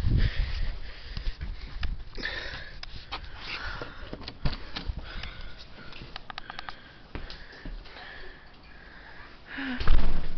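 A person sniffing and breathing in short breathy bursts, over camera-handling rubs and scattered clicks, with a quick run of clicks about two-thirds through and a loud bump at the very end.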